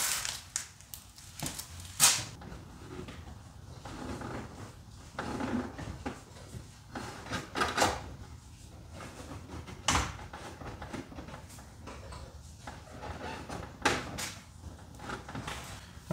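Hands feeding an antenna cable through an opening in a car's inner fender and body panel: faint, irregular scraping and rustling with scattered sharp clicks and knocks, the sharpest about two seconds in and near ten seconds.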